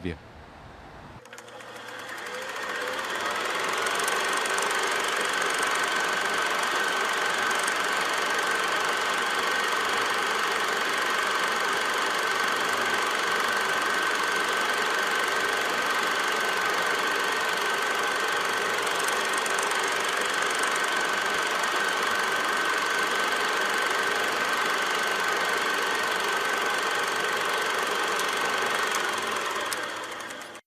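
Film projector running steadily, with a steady whine over its mechanism noise; it fades in over the first couple of seconds.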